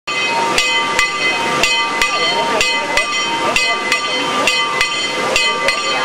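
A single church bell in a brick bell gable is swung and rung, its clapper striking about twice a second from about half a second in. Its ringing tone carries on between the strokes.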